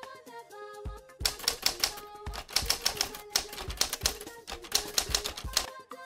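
Typewriter key-clatter sound effect, a rapid run of clicks that starts about a second in and stops shortly before the end, with two short breaks. Background music with a low beat plays underneath.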